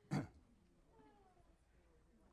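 A single brief vocal sound, about one syllable long, from a person just after the start, then faint room noise with a few weak gliding tones.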